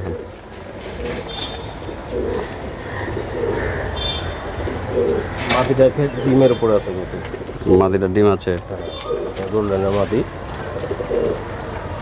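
Domestic pigeons cooing several times, in wavering low calls.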